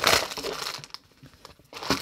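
Clear plastic sleeve crinkling as it is handled and opened, fading out after about a second.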